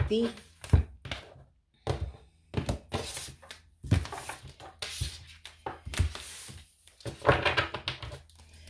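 Tarot cards being shuffled, cut and laid out on a tabletop: a run of short slaps, riffles and taps, with a firmer knock about a second in.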